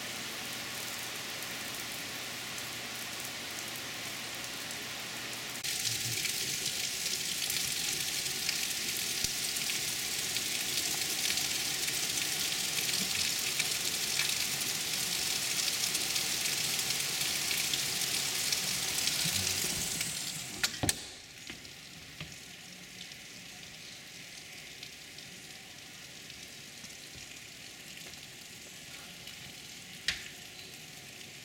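Heavy rain falling steadily, a dense hiss. About a fifth of the way in it grows louder; about two-thirds of the way through come a couple of sharp clicks, and the rain then sounds much quieter.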